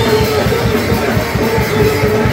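A live rock band playing loudly, with fast, driving drumming and guitar.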